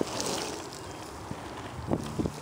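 Surfskate wheels rolling over rough asphalt close to the camera, a steady rumbling noise mixed with wind on the microphone, with a short knock near the end.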